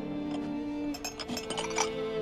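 Dramatic score of held bowed-string notes, broken about a second in by a cluster of sharp clinks and clatter of breaking porcelain, loudest near the end: a china teacup being dropped and smashed.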